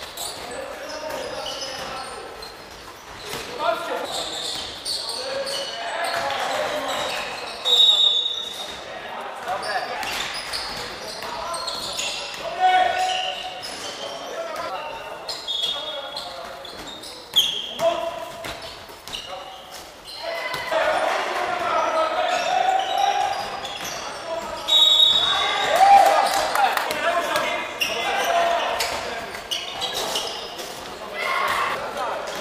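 Live basketball game in an indoor gym: a ball bouncing on the wooden court, brief high sneaker squeaks a few times, and players' voices calling out, all echoing in a large hall.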